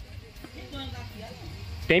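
Faint, quieter speech from a voice in the background, over a low steady hum.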